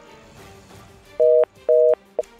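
Two short two-tone electronic beeps about half a second apart, like a telephone busy signal, over soft background music.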